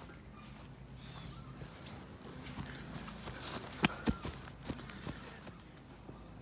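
Footsteps on grass and light knocks from a handheld phone being carried while walking, with a couple of sharper taps about four seconds in. A steady high-pitched hum runs underneath.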